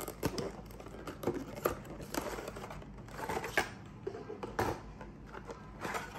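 A paperboard box flap being opened and its contents, in a crinkly clear plastic bag, pulled out by hand: irregular clicks, crinkles and rustles of cardboard and plastic, with a couple of sharper snaps past the middle.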